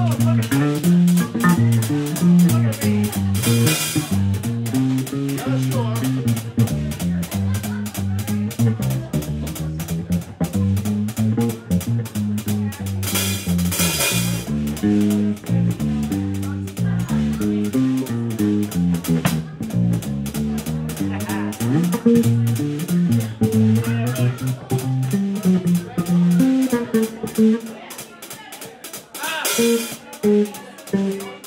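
Electric bass solo in a live blues band: a line of plucked bass notes moving up and down, with the drums keeping time underneath on cymbals. Cymbal crashes ring out about three and a half seconds in, about thirteen seconds in, and again at the very end, and the playing drops in level shortly before that last crash.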